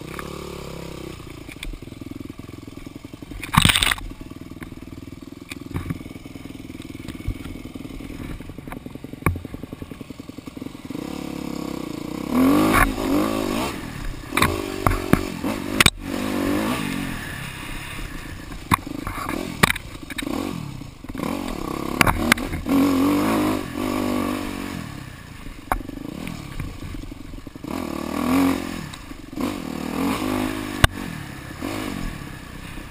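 Yamaha dirt bike engine running steadily at low throttle, then revving up and down again and again as it speeds along a woods trail, with scraping and clattering from brush and the bike's chassis. One sharp loud knock comes a few seconds in.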